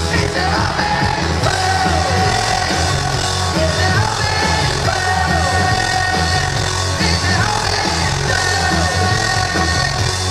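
Live band playing a rock song on acoustic guitars and drums, loud and steady throughout, with melodic lines sliding up and down in pitch.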